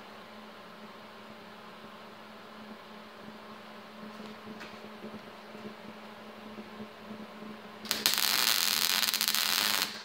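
A steady low hum, then near the end about two seconds of loud, dense crackling from a wire-feed (MIG) welder's arc laying a short weld on steel, cutting off sharply.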